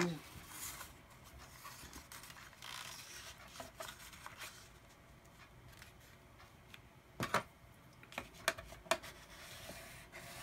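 Orange cardstock being handled and folded along a score line on a ridged scoring board: faint paper rustling, with a few sharp clicks in the second half.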